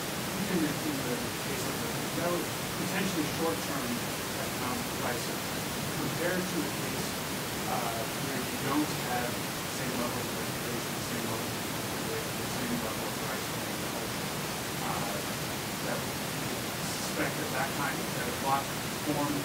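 Faint, distant speech from a man in the audience asking a question, over a steady hiss.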